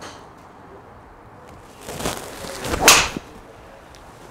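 Golf swing with a PXG Black Ops Tour driver: a swish about two seconds in, then a quicker rising whoosh of the downswing that ends in the sharp crack of the clubhead striking the ball off the mat, the loudest sound, near the end.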